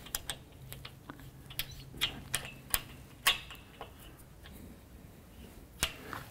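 Light metallic clicks and taps, irregularly spaced, as an Allen key is worked in the clamp screws of a folding clothesline's metal spreader-bar corner to tighten it.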